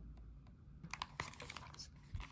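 Rigid plastic and cardboard product packaging handled by hand: scattered light clicks and taps, most of them after the first second.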